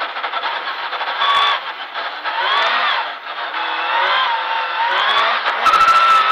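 Rally car engine heard from inside the cabin under hard acceleration, climbing in pitch through the revs. It drops about halfway through at a gear change and climbs again.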